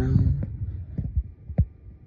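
Dull low thumps, about five in under two seconds, with one sharper knock near the end: handling noise of a handheld phone rubbing and bumping against its microphone.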